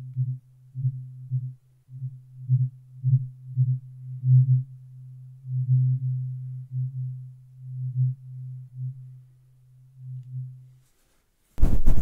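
A tuning fork humming on a low, steady note, swelling and fading in uneven pulses close to the microphone. It dies away about 11 seconds in. Just before the end, a soft brush starts sweeping over the microphone grille with a loud rustle.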